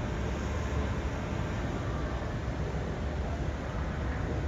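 Steady outdoor background noise: an even hiss over a low rumble, with no distinct knocks or engine note standing out.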